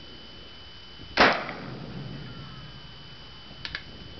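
A single shot from a Thompson Center Hawken .54-calibre percussion-cap muzzle-loading rifle, fired about a second in, with a short ringing tail.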